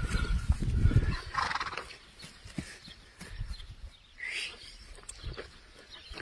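Horses moving about on grass pasture: a loud low rumble in the first second as a foal gets up and moves beside a mare, then a short high animal call about a second and a half in and a fainter one near four seconds.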